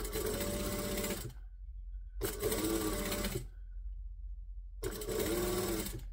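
Mitsubishi LS2-130 industrial sewing machine stitching along a folded-over ribbon in three short runs, each a little over a second long, stopping between runs.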